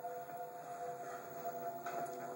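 A held soundtrack drone of several steady tones sounding together, heard through a television speaker. It fades out near the end.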